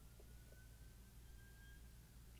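Near silence: room tone with a steady low hum and a very faint thin whistle that rises slightly in pitch.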